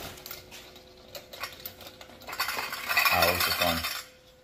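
Tin lithographed spinning top spinning on a wooden tabletop, giving a faint steady hum. About two seconds in it grows louder, with a metallic rattling and scraping against the table.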